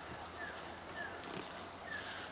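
A bird calling, a short falling whistle repeated three times, over a steady background hiss.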